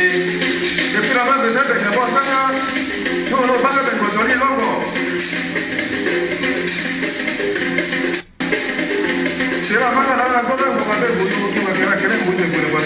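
A traditional gourd-resonated string instrument being played: a run of pitched plucked notes over a steady high rattling sizzle. The sound cuts out briefly about eight seconds in.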